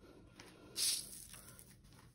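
A brief dry swish of a sheet of watercolor paper being laid down and slid onto a countertop, about a second in.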